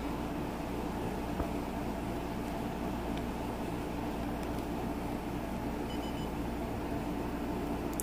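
A steady low mechanical or electrical hum, with a faint click about a second and a half in and a short, faint high beep about six seconds in.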